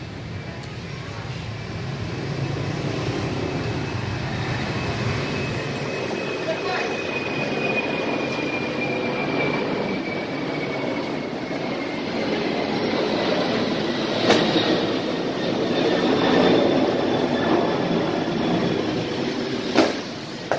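Steady rumble of street traffic with voices in the background, and a faint high whine that slowly falls in pitch over several seconds. Two sharp knocks stand out, one about fourteen seconds in and one at the very end.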